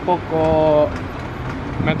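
A man's voice holding a drawn-out hesitation sound, about three-quarters of a second long, mid-sentence, then a short pause over a steady outdoor background noise.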